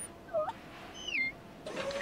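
A man's voice making short, high-pitched "eep" squeaks: two brief chirps, the second sliding down in pitch, with another "eep" starting near the end.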